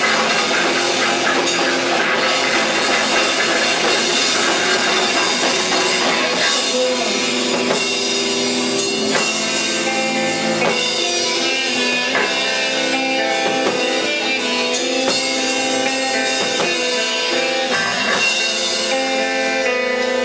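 A rock band playing live: electric guitar through a Marshall amplifier over a Pearl drum kit with cymbals. The dense, full sound thins after about six seconds into clearer, separate held notes over the drums.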